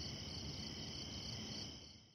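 Faint, steady chirping of crickets, a night-time ambience that fades out near the end.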